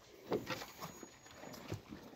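Zebu cattle eating corn meal mixed with mineral salt from a trough: faint, irregular chewing and licking noises.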